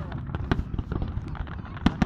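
Fireworks exploding in quick succession over a low rumble. A loud bang comes right at the start and another near the end, with many smaller pops and crackles in between.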